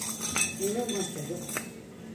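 A few light metal clinks from a chain dog leash being handled.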